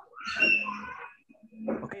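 An animal's high-pitched cry, about a second long, heard over a video-call line.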